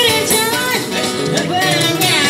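A woman singing a pop song through a microphone and PA, backed by a live busking band with guitar.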